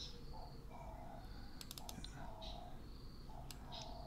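A few faint computer mouse clicks, several bunched together a little under halfway through and another near the end, over a steady low background hum.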